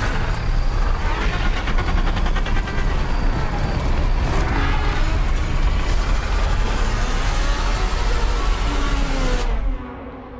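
Film trailer's loud sound-design mix: a deep rumble under a dense wash of noise, cutting off abruptly just before the end as the picture goes to black.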